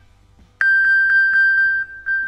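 iPhone sounding its Find-my-iPhone ping alert, set off from an Apple Watch: a loud, high, pinging tone that begins suddenly about half a second in and pulses rapidly, about six times a second.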